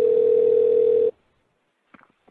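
Telephone ringback tone of an outgoing call: one steady ring about a second and a half long that cuts off abruptly.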